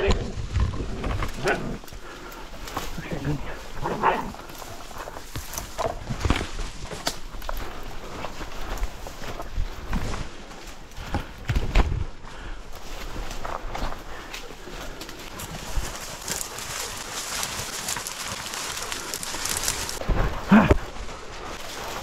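Hunting dogs barking as they hold a young wild boar at bay, amid repeated crashing and snapping of branches and leaves as someone forces a way through dense undergrowth.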